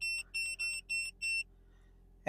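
AutoLink AL329 OBD2 code reader beeping: five short, high electronic beeps about a third of a second apart, one per press of its scroll button as the live-data list pages down.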